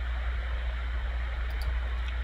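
Steady background hiss with a low hum, the room tone of a meeting's audio, with a couple of faint clicks about a second and a half in.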